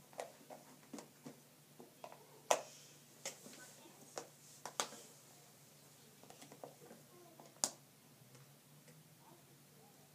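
Light scattered clicks and taps of letter cards or tiles being handled and set down on a lesson board, with a sharper tap about two and a half seconds in and another near eight seconds.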